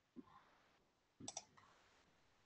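Faint computer mouse clicks over near silence: one click, then a quick double click about a second later.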